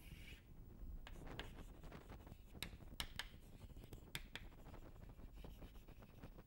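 Chalk writing on a blackboard, faint: light scraping and a scatter of short ticks as the chalk strikes and moves across the board.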